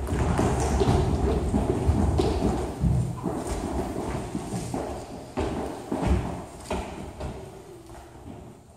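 A group's feet stepping and stomping on a floor, many overlapping thuds, fading toward the end.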